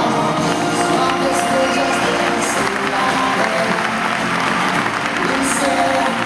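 Dance music playing, with the audience applauding and cheering over it, the clapping building up from about a second and a half in.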